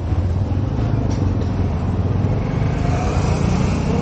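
A motor vehicle's engine running steadily, a low rumble with street traffic noise around it.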